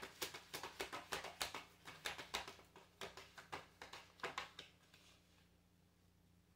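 A deck of tarot cards being shuffled by hand, passed from hand to hand in a rapid run of light card flicks about four a second, which stops after about four and a half seconds.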